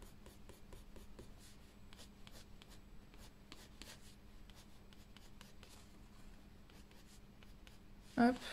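Faint scratching of a soft, waxy white colored pencil on paper, many quick short strokes one after another.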